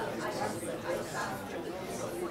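Indistinct chatter of many people talking at once in a large hall, no single voice standing out.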